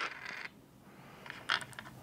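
The last of a handful of dice rattling to a stop in a wooden dice tray, then a few light clicks about a second and a half in as the dice are moved by hand in the tray.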